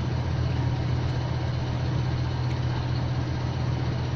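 Electric pedestal fan running: a steady low hum with an even whir of moving air.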